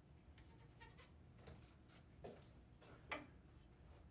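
Near silence in a small room, broken by a few faint soft clicks and knocks, the loudest about three seconds in.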